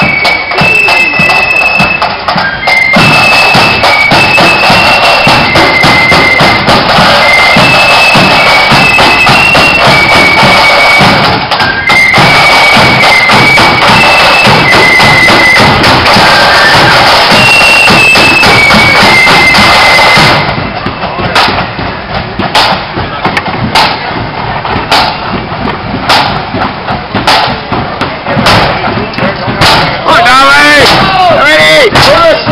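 Marching flute band playing a high melody on flutes over snare and bass drums, loud. About twenty seconds in the flutes stop and only the drums keep beating.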